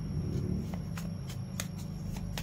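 A tarot deck being shuffled by hand: a run of quick, irregular card clicks.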